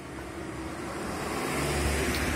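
A passing road vehicle, its engine and tyre noise growing steadily louder as it approaches.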